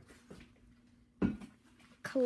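Quiet handling of a small stack of football trading cards in gloved hands, fingers sliding and shuffling the cards, with one short low thump about a second in over a faint steady hum.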